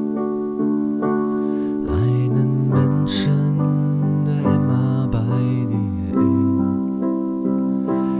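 Instrumental passage of a slow song: sustained keyboard chords over a bass line that changes note every second or so.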